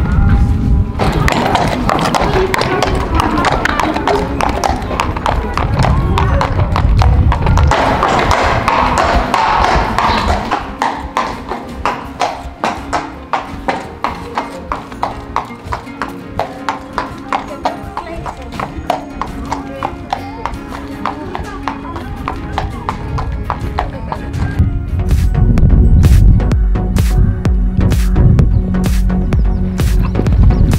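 Background music with a horse's hooves clip-clopping at a walk on hard paving through the middle, about two steps a second.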